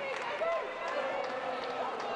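Voices calling and shouting across a football pitch, short high calls over a steady background murmur.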